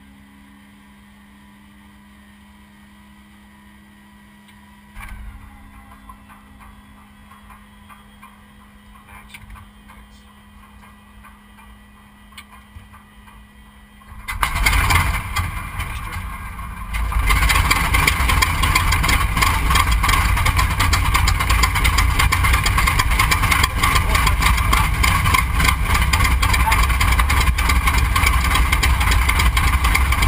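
B-25's Wright R-2600 radial engine being started: a rising starter whine over a steady electrical hum, then a low turning rumble with clicks while it cranks. About 14 seconds in the engine fires with a sudden loud burst and puffs of smoke, then settles into loud, steady running.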